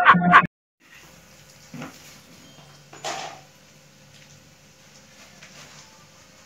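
A man's loud, rhythmic laughter that cuts off abruptly about half a second in. Then comes quiet room tone with two brief faint sounds.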